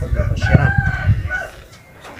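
A rooster crowing once, a held call of about a second, over a low rumble.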